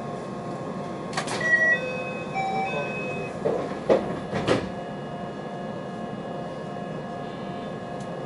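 JR West 223-series electric train standing at a station with a steady electrical hum. A short chime of stepped tones comes about a second and a half in, followed by a few sharp knocks and thuds around four seconds in.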